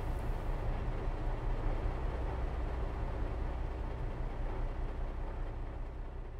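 Steady low rumble of a car driving on a paved road, heard from inside the vehicle.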